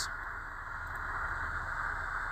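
Faint, steady background hiss: room tone.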